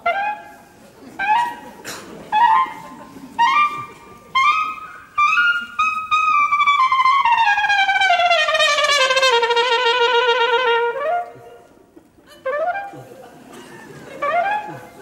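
A brass instrument plays short notes about once a second, each sliding up in pitch as it starts. Then comes a long held note of about five seconds that glides slowly downward and wavers near its end.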